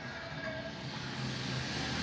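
Water running from a wall tap into a balloon stretched over the spout, a steady low rush that grows slightly louder as the balloon fills.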